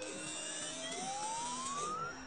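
A whirring, machine-like sound: a whine that climbs steadily in pitch through the two seconds over a steady hiss.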